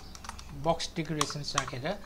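Computer keyboard typing: a quick run of keystrokes in the first half second, then more keystrokes under a talking voice.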